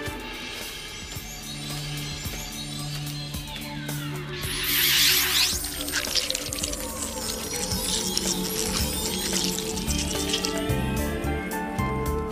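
Background music score with sustained tones. About five seconds in, a bright cluster of rising and falling sweeping sounds is the loudest moment, with more sweeps running on until near the end.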